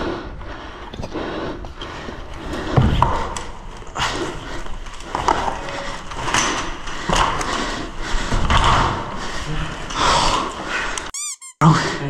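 Footsteps and handling noise in a small, bare room: irregular scuffs, squeaks and knocks as a player moves through a derelict building. A brief dropout breaks the sound near the end.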